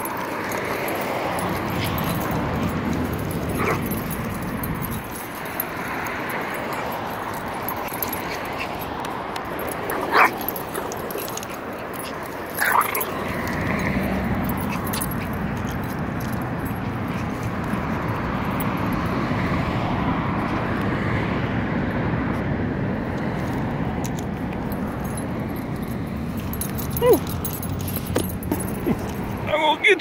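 Small Yorkshire terriers playing, with a few short yips and whimpers scattered through, over a steady background rush.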